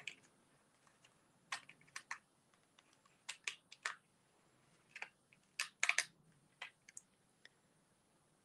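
Cardstock and die-cut paper pieces handled and pressed down with fingertips, giving a faint scatter of short, irregular clicks and taps.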